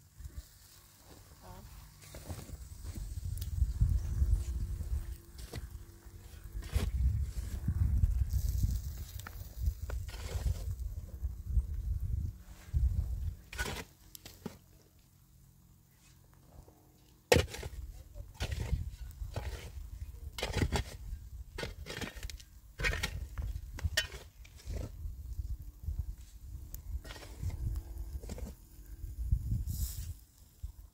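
Pickaxe blows into dry, stony soil, a sharp knock about once a second from about halfway through, over a low, gusty rumble of wind on the microphone.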